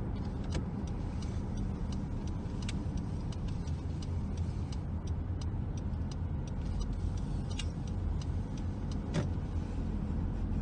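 Steady low road and engine rumble of a car driving slowly, heard from inside the cabin, with light irregular ticks and clicks throughout and one sharper click about nine seconds in.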